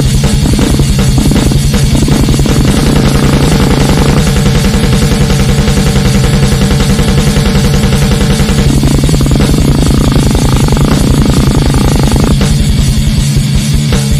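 Extreme metal track: heavily distorted guitars over very fast, relentless drumming, the riff changing about nine seconds in.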